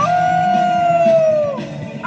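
A man singing along to rock music playing in a car, holding one long note that slides slightly down in pitch and fades out after about a second and a half.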